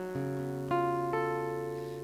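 Acoustic guitar playing a short passage between sung lines: three notes or chords plucked in turn, each left ringing and fading.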